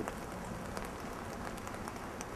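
Steady light rain: a soft, even hiss with a few faint scattered drip ticks.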